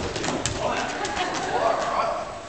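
Dodgeball players shouting and calling out, one long wavering call rising and falling near the end, with a short thud of a ball on the wooden floor about half a second in.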